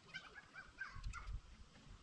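Faint calls of farm fowl: a few short squawks in the first second. Under them, low soft bumps from hands handling the tractor's cables and wiring harness.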